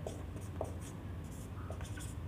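Whiteboard marker writing on a whiteboard: faint, scattered short strokes and small ticks of the nib, over a low steady hum.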